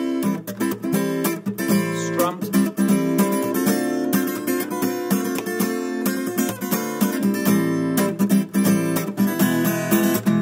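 Steel-string acoustic guitar playing a blues-style passage of plucked chords and single notes, with the bright sound of steel strings.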